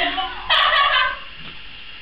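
A rising high-pitched cry carrying over the start, then a loud shrill squawk-like cry about half a second in, lasting about half a second.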